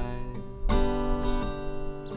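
Takamine acoustic guitar strummed: a chord rings and fades, then a new chord is strummed about two-thirds of a second in and left to ring.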